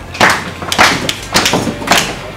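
Foot stomps and hand claps in a steady repeating beat, about three strokes a second, with children clapping along.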